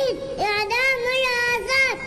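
A small child's high-pitched voice chanting a protest slogan into a microphone. It comes in two drawn-out, sing-song phrases held at a steady pitch.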